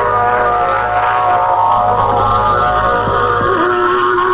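Shortwave AM broadcast from Bangladesh Betar on 9455 kHz, received through a software-defined radio: music with sustained notes over static and a steady low hum. A note slides in pitch past three seconds in.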